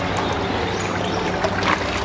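Pond water splashing and churning steadily as a crowd of koi thrash at the surface, feeding.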